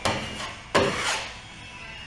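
A drywall knife scraping joint compound across a drywall surface, forcing mud into bubble holes and scraping off the excess. Two strokes, one at the start and one about three-quarters of a second in.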